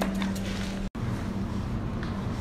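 Steady low electrical hum and faint hiss of a supermarket's background, such as refrigerated display cases and ventilation, cutting out for an instant about a second in.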